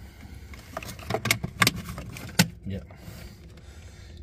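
Light clicks and rattles of plastic connectors, wires and a small plastic switch housing being handled and lifted inside a ride-on toy tractor's electronics compartment, a handful of sharp clicks in the first two and a half seconds.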